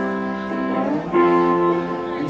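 Live rock band music with electric guitars and bass holding a chord, which changes to a new chord about a second in.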